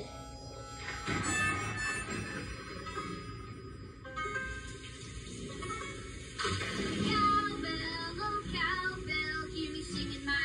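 A children's cartoon song playing from a TV's speakers: backing music, then a voice singing from about six and a half seconds in.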